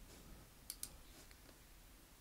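Near silence: room tone with two faint clicks close together about two-thirds of a second in, and a fainter one shortly after.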